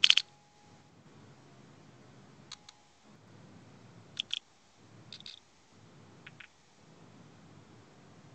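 A few sharp clicks at a computer, the first and loudest right at the start, then quieter ones mostly in pairs, over faint low background noise.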